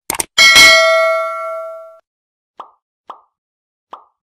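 Subscribe-button animation sound effects: two quick clicks, then a bright bell ding that rings out for about a second and a half, followed by three short pops spaced about half a second apart.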